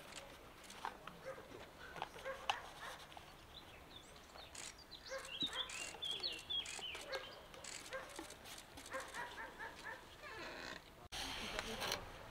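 Quiet open-air crowd ambience: low murmured voices with scattered sharp clicks, and a few short high-pitched calls around the middle.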